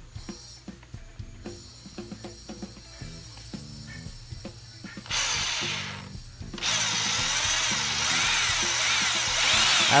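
Soft background music, then a Black+Decker corded electric drill boring into a wooden board: a short burst about five seconds in, a brief pause, then running steadily for the rest.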